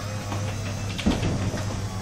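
Electric garage door opener running as the overhead door opens: a steady low hum, with a few light knocks about a second in.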